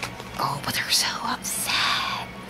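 A person whispering a few breathy words under their breath, over faint background music.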